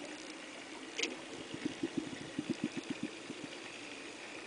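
Underwater sound picked up by a diver's camera: a steady hiss with a sharp click about a second in, then a run of low burbling pulses for about two seconds, as a scuba diver's exhaled regulator bubbles rise.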